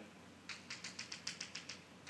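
Chalk tapping on a blackboard: a quick run of about a dozen sharp taps, starting about half a second in, as a dotted line is drawn.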